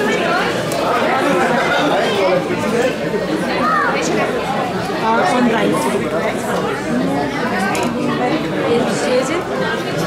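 Many people talking at once in a crowded room, an indistinct chatter of overlapping voices with no one voice standing out, and a few short clinks now and then.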